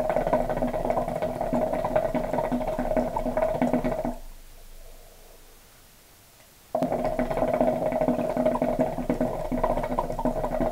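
Hookah water base bubbling hard as smoke is drawn through the hose in two long pulls. The first ends about four seconds in; after a short pause the second begins about seven seconds in.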